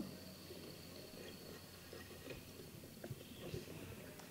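Faint, irregular bubbling of water in a glass dab rig as a dab is drawn through it, with a few sharper clicks near the end.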